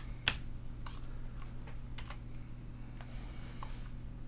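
Clicks from a computer keyboard and mouse: one sharp click about a quarter second in, then a few fainter ones scattered through the rest, over a low steady hum.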